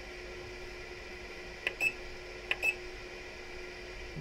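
Steady electrical hum, with two pairs of short clicking beeps a little under two seconds in and again about a second later, as the zinc plating power supply's current is stepped down.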